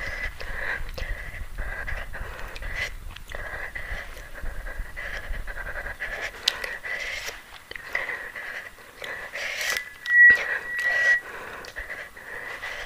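A woman breathing hard in and out through her open mouth and teeth, her mouth burning after eating a super-hot Jolo chip. One breath about ten seconds in carries a short high whistle, the loudest moment.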